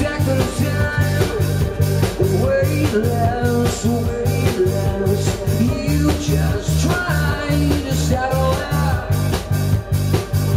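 Live rock band playing: a male voice singing over guitar, keyboards and drums, with the low end pulsing on a steady beat.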